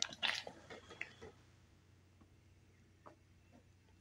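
Soft rustling and a few clicks in the first second or so, then quiet room tone with a faint steady low hum and a couple of isolated soft clicks.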